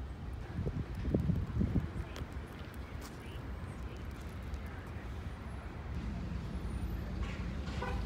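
Outdoor parking-lot ambience: a steady low rumble, with faint voices in the first two seconds.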